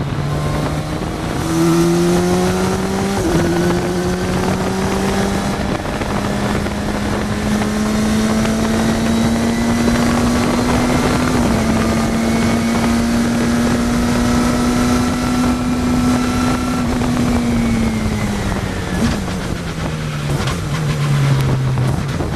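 Radical race car's engine heard onboard, with wind buffeting the microphone in the open cockpit. The engine note climbs as the car accelerates, with a sharp step about three seconds in like a gear change, holds high through the middle, then drops away near the end as the car slows for a corner.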